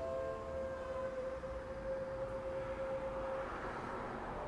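A saxophone holds one long steady note for about three and a half seconds in a concrete car park, with a hiss growing beneath it toward the end.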